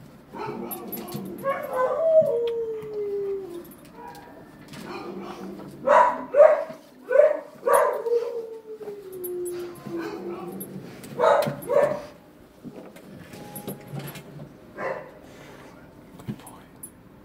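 Dog barking and crying: a long falling cry about two seconds in, a run of short barks around six to eight seconds followed by another long falling cry, then two more barks near twelve seconds.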